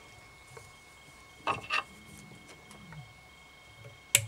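Quiet room tone with two brief, soft handling sounds about a second and a half in: fingers working the silver rib and tying thread around a fly held in the vice.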